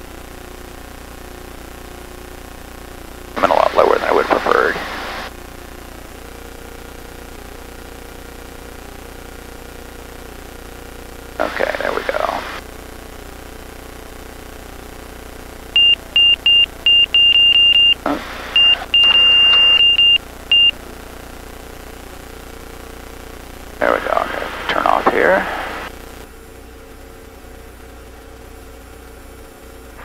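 Van's RV light aircraft's engine droning steadily at low power around the landing. About halfway through, a high cockpit warning tone beeps loudly in quick, uneven pulses for about five seconds.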